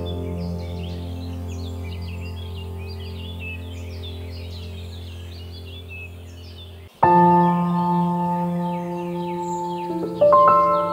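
Slow, soft piano background music: one chord held for about seven seconds, fading gently, then a new chord struck about seven seconds in. Birdsong chirps throughout.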